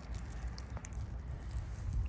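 A paper tissue faintly rustling and crinkling as it is held against the ear, a few soft clicks over a steady low rumble.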